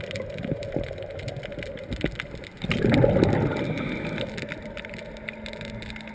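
Muffled underwater sound through a camera housing: a low rush of water and bubble noise that swells about three seconds in, with scattered sharp clicks and a faint steady hum.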